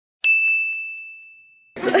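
A single bright bell ding, a sound effect added in editing: one clear high tone that fades away evenly over about a second and a half, then stops abruptly.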